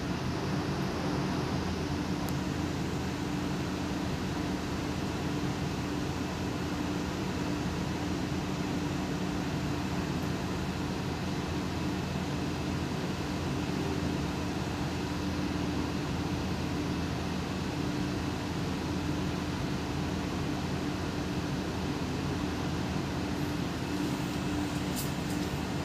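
Steady machinery hum with a few low, constant tones over an even rumble, unchanging throughout.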